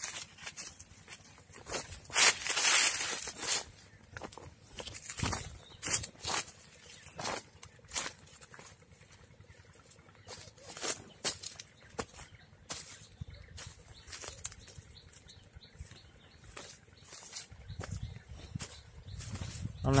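Irregular crunching and rustling of dry leaf litter and cashew branches, the sound of someone walking through an orchard and pushing past foliage, with a longer rustle about two seconds in.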